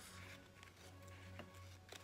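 Near silence: a faint steady hum under faint background music, with a couple of soft ticks near the end.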